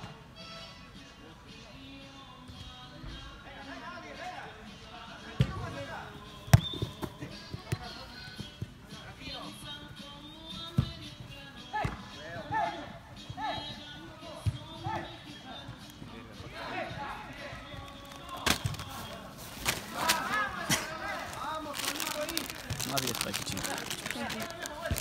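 A soccer ball being kicked and bouncing during indoor play, sharp thuds every few seconds, the loudest about five and six and a half seconds in, over players' voices and background music. The shouting and kicks grow busier near the end.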